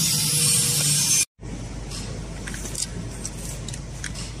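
A loud steady hiss over a low hum cuts off abruptly about a second in. After it, a quieter background carries light crinkles and clicks from plastic sachets filled with liquid being handled.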